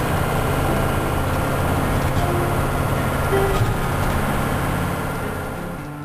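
Engine and road noise heard from inside a moving shuttle bus: a steady low drone with a constant hum, fading out near the end.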